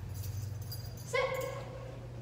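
German Shorthaired Pointer giving one short, high whine about a second in, over a steady low hum.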